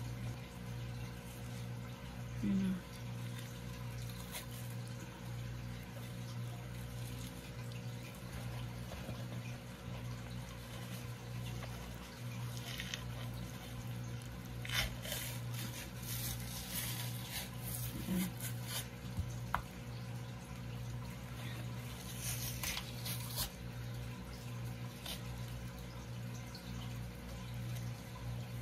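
Paper towel being pressed and rubbed over wet raw pork ribs to pat them dry: soft, intermittent rustling and damp squishing, over a steady low hum.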